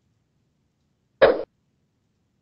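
A man's single short cough, a little over a second in.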